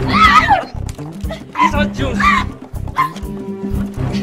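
Frantic shouting and crying voices in short bursts over background music with a steady beat.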